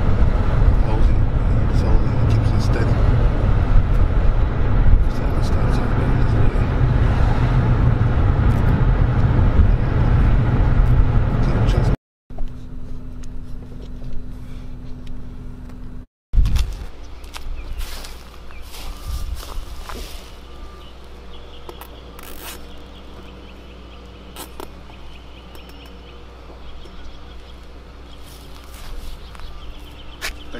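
Car driving along a street, heard from inside: steady engine and road noise for the first twelve seconds. After a cut, quieter outdoor ambience with scattered light knocks and taps.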